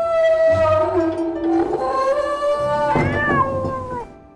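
Heavy old wooden double doors creaking long and loud on their hinges as they are swung shut, several squeals at once, their pitch sliding slowly down. A knock about three seconds in as the doors meet.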